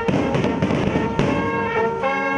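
Street band of tuba, trombone, trumpets, saxophones and baritone horns playing with large samba-style drums. A busy run of drum strokes dominates the first half, and the brass chords come back in about halfway through.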